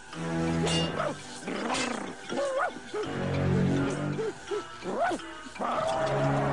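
A cartoon dog's voiced whimpering cries, several short rising-and-falling whines, over background music with held notes.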